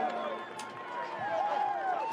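Faint voices over steady stadium background noise at a rugby match, just after a try.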